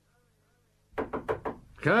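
A quick run of knocks on a door, about a second in, followed by a man's voice saying 'Come in'.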